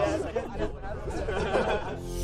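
Overlapping chatter of a group of young people talking and calling out at once.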